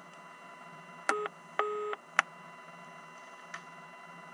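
Telephone line tone right after the call ends and is hung up: two short beeps about a third of a second apart, followed by a sharp click, over a faint steady line hum.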